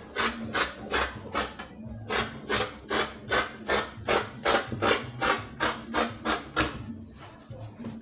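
Tailor's scissors cutting through folded fabric along a marked curve, closing in a steady run of snips about three times a second.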